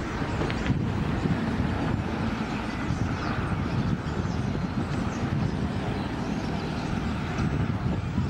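Steady low rumble of nearby traffic and wind on the microphone, with faint high-pitched squeals and chirps from a huge flock of birds wheeling overhead.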